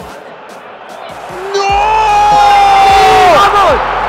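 Football stadium crowd erupting at a goal from a cross: a low murmur for about a second and a half, then a loud roar with one long held shout over it that breaks off near the end into shorter falling yells.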